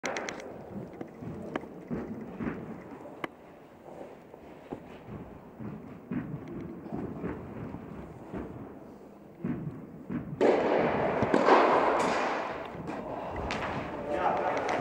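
Tennis rally in an indoor hall: sharp racket strikes on the ball and ball bounces ringing off the hall walls. From about ten seconds in, a loud rushing noise rises over the play and fades away near the end.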